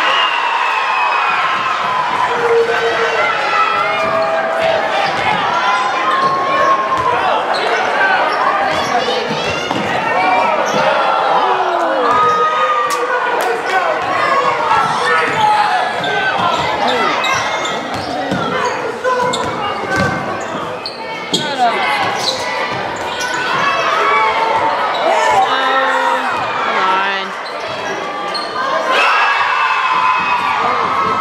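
Basketball being dribbled and bouncing on a hardwood gym floor during play, under constant crowd voices and shouting in the gym.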